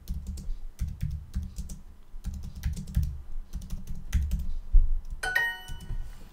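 Typing on a computer keyboard: irregular quick keystrokes. About five seconds in, a short bright chime from the language-learning app marks the answer as correct.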